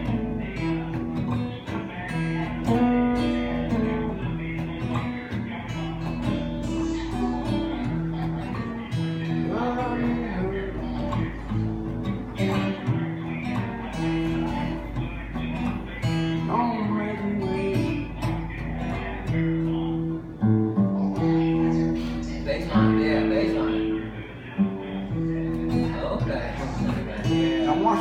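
Acoustic guitar playing a blues piece, plucked single notes and strummed chords going on steadily.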